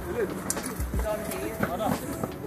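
Faint voices of other people talking in the background, with low, soft thuds every half second or so.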